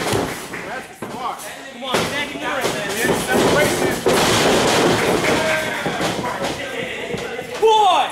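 A thud as a wrestler's body is slammed onto the ring mat by a German suplex, followed a couple of seconds later by a small crowd shouting and cheering for several seconds.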